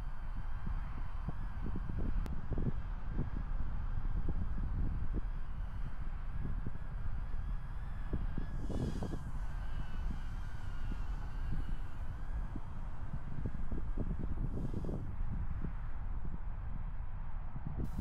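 Wind rumbling on the microphone, with the steady whine of a small quadcopter drone's propellers as it flies around.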